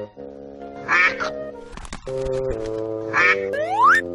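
Cartoon duck quack sound effect, twice: once about a second in and again about three seconds in, over background music of steady held chords. Just before the end a tone glides steeply up in pitch.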